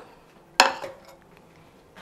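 A small stainless steel saucepan clanks once, sharply, with a brief metallic ring, followed by a few faint clinks as it is handled.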